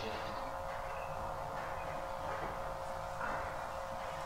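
A steady background hum, with faint voices now and then.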